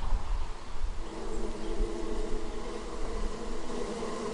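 A bee buzzing in flight, a steady hum that grows stronger about a second in, over a low rumble on the microphone.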